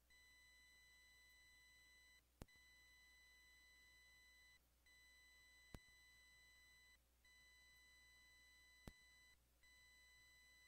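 Near silence, with a very faint steady electronic tone and its overtones, cut off briefly about every two and a half seconds, and faint clicks about every three seconds.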